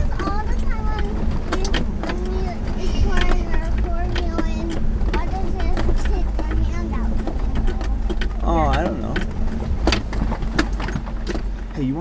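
Inside the cabin of a 2003 Land Rover Discovery 2 crawling over a rocky trail: a steady low engine and drivetrain rumble with frequent knocks and rattles from the bumpy ground, under indistinct voices.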